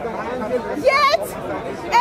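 People talking: voices and chatter, with no other sound standing out.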